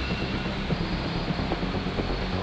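Steady mechanical rumble and hiss of construction machinery at a concrete pour, with no distinct strokes or knocks standing out.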